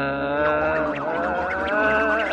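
A single held, slightly wavering pitched tone with a rich buzzy timbre, a cartoon sound effect or sustained note in the show's animated-sequence soundtrack.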